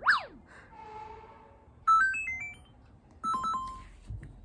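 Electronic sound effects: a quick falling glide, then a short run of stepped beeping tones about two seconds in, like a ringtone, and a few more beeps near the end.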